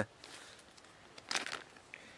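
Brief rustling and crinkling of clothing and handling noise about a second and a half in, followed by a faint tick just before the end, against quiet room tone.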